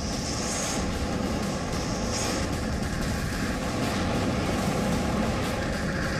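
Steady low rumbling noise with a hiss over it, without any distinct shots or blasts.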